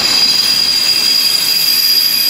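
Railway passenger coach wheels squealing against the rails as the train moves off: a loud, steady, high-pitched squeal that holds throughout.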